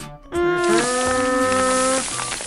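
Dubbed pouring sound effect for powder streaming into a plastic bowl: a steady hiss that starts abruptly, with a buzzing hum of held tones over it that steps up in pitch once.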